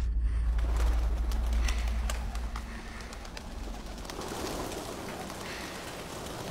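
A flock of pigeons flapping their wings as they take off, with some cooing. A low rumble dies away over the first three seconds.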